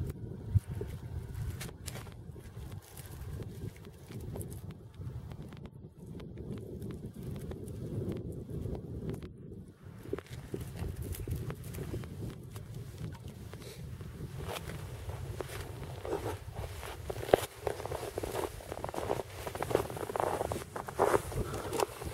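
Fishing setline being hauled up by hand out of an ice hole: faint rustling, scraping and handling clicks of cord and clothing over a low wind rumble on the microphone, getting busier in the last several seconds.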